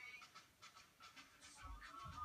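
Near silence: faint room sound with traces of background music and singing.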